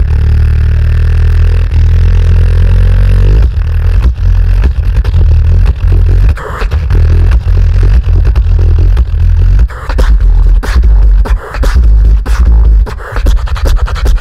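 Beatboxer performing loudly into a handheld microphone through the PA: a deep, held bass sound for the first few seconds, then a fast run of bass kicks and sharp clicking percussion over continuing heavy bass.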